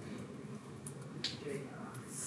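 A single sharp click a little over a second in, over soft, low murmuring of a man's voice.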